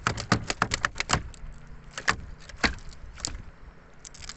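Sharp knocks and clattering as a large fish is worked loose from a gill net in the bottom of a wooden boat: a quick run of clatters in the first second, then a few single knocks.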